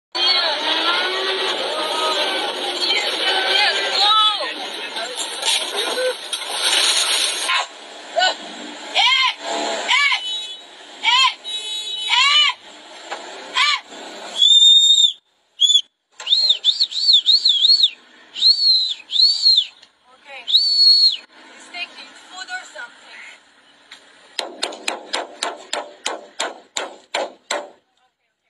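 People's voices: busy shouting, then short shrill cries that rise and fall in pitch. Near the end comes a quick series of sharp, evenly spaced clicks, about four a second.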